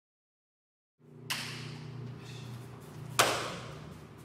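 Two sharp impacts of jiu-jitsu grappling on a training mat, the second louder and ringing out briefly, over a steady low hum.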